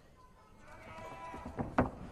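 A drawn-out yell held on one pitch for about a second, growing louder, then a short loud shout near the end.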